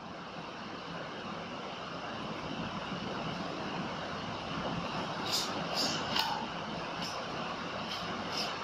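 Steady background hum of room noise, with a few brief swishes of a cloth duster wiping a whiteboard about five to six seconds in.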